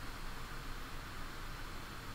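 Steady low hiss of room tone and microphone noise, with no distinct events.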